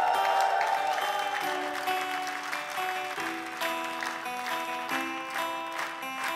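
Instrumental intro of a live acoustic band performance: guitar chords strummed under sustained melody notes, with audience applause in the first moments.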